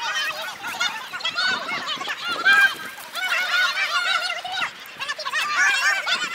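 A flock of birds calling without pause: many short, overlapping, arching honk-like calls at several pitches, several a second.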